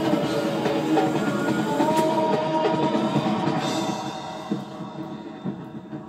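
Music with drums playing, dropping noticeably in level about four seconds in.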